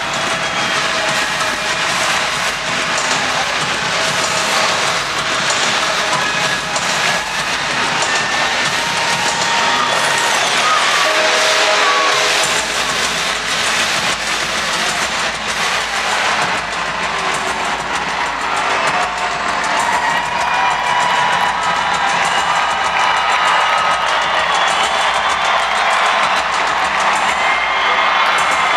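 Large stadium crowd cheering during a team's run-out, a steady roar with whistles and shouts over it.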